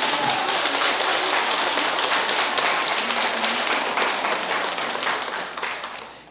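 Audience applauding, many hands clapping together, dying away near the end.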